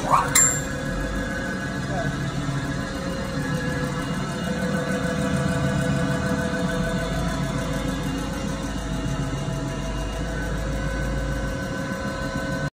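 Bryant 1460 internal grinder running under power with its grinding spindle turned on: a steady machine hum with several steady whining tones over it. A brief sharp sound comes right at the start.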